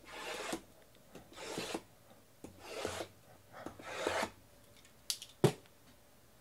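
Shrink-wrapped cardboard trading-card boxes sliding against one another: four short swishes about a second and a half apart, then a couple of clicks and a sharp knock near the end.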